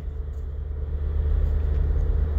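Steady low rumble of background noise with a faint hum above it.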